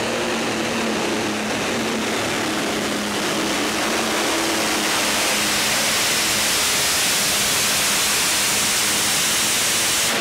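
Multi-engine competition pulling tractor running flat out under full load as it drags the weight sled down the track, a loud, steady engine noise.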